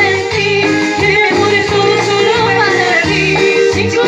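A woman singing live into a microphone, amplified through a PA speaker, over a loud recorded backing track with a stepping bass line.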